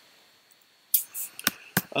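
Near silence, then about a second in a quick intake of breath and two sharp clicks about a quarter second apart.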